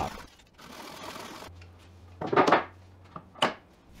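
Flush trim saw cutting a pine leg end flush with the bench top: soft sawing at first, then a louder rasping stroke about halfway through and a shorter one near the end.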